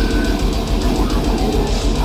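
Death metal band playing live, electric guitar over drums with rapid, even kick-drum pulses, heard loud from within the crowd.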